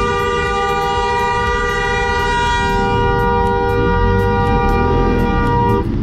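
Vehicle horn held down in one long, steady blast, two notes sounding together, that cuts off suddenly near the end.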